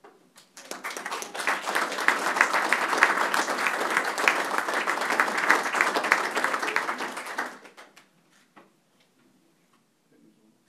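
Audience applauding, a dense round of hand clapping that starts about half a second in, holds steady, and dies away about three-quarters of the way through, leaving a few last scattered claps.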